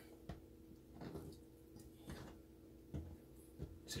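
A few faint, irregular clicks and knocks of kitchen prep work as sliced smoked sausage is handled on a plastic chopping board, over a faint steady hum.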